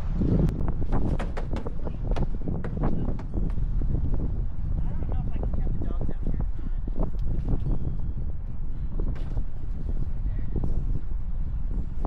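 Wind buffeting the microphone as a steady low rumble, with scattered knocks and clicks of handling and movement over it.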